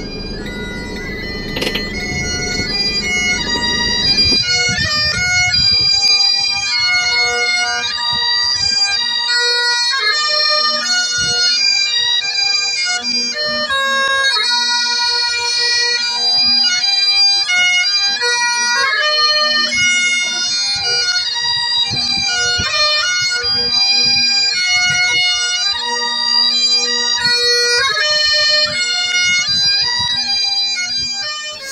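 Bagpipe music: a melody played over a steady, unbroken drone. For about the first four seconds it is mixed with a low rumble, which then drops away and leaves the pipes alone.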